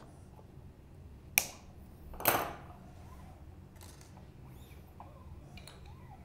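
Side cutters snipping a new steel guitar string to length at the headstock: one sharp snip about a second and a half in, then a second short noise about a second later.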